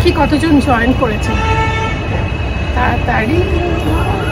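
A vehicle horn sounds once, a steady tone for about a second, over a constant low rumble of street traffic.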